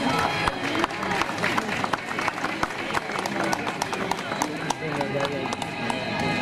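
Small crowd applauding: a dense, irregular patter of individual hand claps over voices talking.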